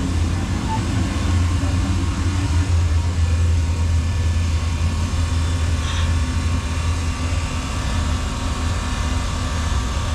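Steady low mechanical hum of running machinery, unchanging throughout.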